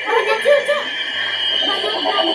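Girls' voices talking in low tones, broken by light laughter.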